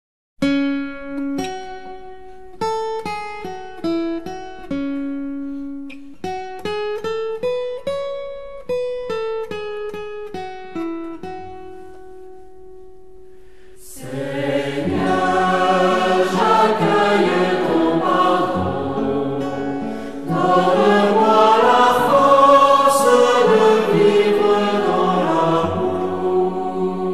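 A hymn's opening: single plucked notes play a slow melody alone, then about halfway through a choir comes in singing with the instruments, louder and fuller.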